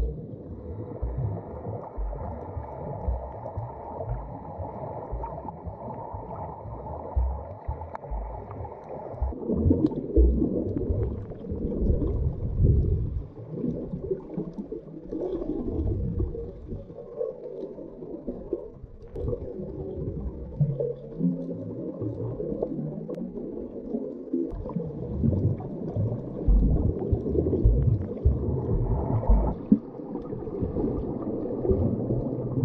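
Muffled underwater sound picked up by a camera held below the surface: water swishing and surging with uneven low thumps as the swimmer moves through the water. A faint steady whine sits over it for the first nine seconds or so, then stops.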